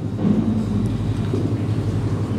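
Steady low background hum filling a pause in the speech, with a brief faint low vocal murmur near the start.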